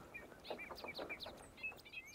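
Faint, scattered chirps of small birds.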